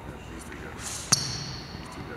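A single basketball bounce on a gym floor just over a second in: one sharp hit with a high ring trailing off, just after a short high scuff.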